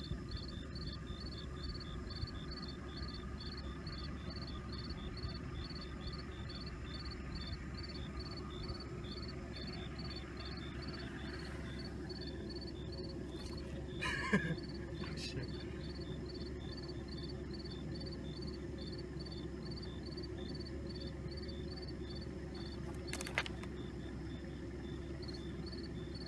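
Insects chirping steadily, a high, evenly repeating pulse that goes on without a break, over a low steady rumble. A couple of short clicks come midway and near the end.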